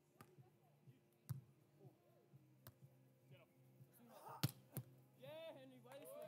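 Near silence broken by a few sharp hits of a beach volleyball being struck, the loudest about four and a half seconds in. A voice calls out near the end.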